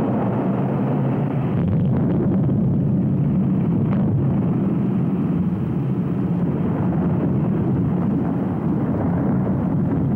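Steady, muffled rumble of the 1958 Ripple Rock underwater explosion as the plume of water and rock rises, heard through dull, old broadcast audio with no high end.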